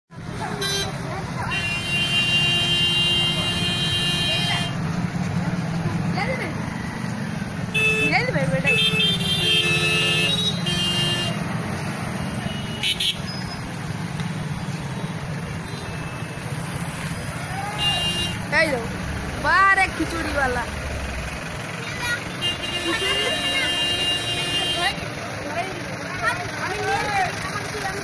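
Jammed street traffic: vehicle horns sound in several long blasts, near the start, around the middle and again late on. Under them run a steady engine rumble, which fades after about two-thirds of the way through, and a crowd's voices.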